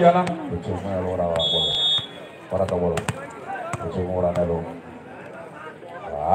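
Referee's whistle blown once for the serve, a short steady high tone about a second and a half in, followed about three seconds in by sharp hits of the volleyball being served, among voices.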